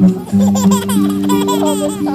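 A baby laughing in a quick run of short, high giggles that starts a moment in and runs nearly to the end, over acoustic guitar music.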